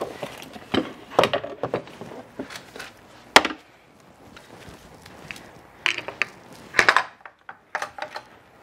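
A string of separate knocks and clatters of hard parts being handled, the sharpest about three and a half seconds in: a small interchangeable heat-press platen being grabbed and brought over for a swap.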